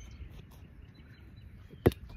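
A small football striking a man's knee: one sharp thud near the end, over quiet open-air background.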